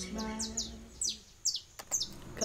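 Birds chirping: a string of short, high chirps, each falling in pitch, over the tail of a held musical note in the first second.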